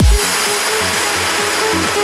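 Trance music: a deep bass hit lands at the very start, then a steady kick drum and bassline with held synth notes under a fading wash of noise.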